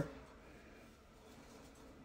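Near silence: faint room tone, with the tail of a voice dying away at the very start.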